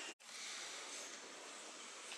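Steady, hushed background noise of a large cathedral interior with visitors walking about. The sound drops out completely for a split second just after the start, at an edit cut.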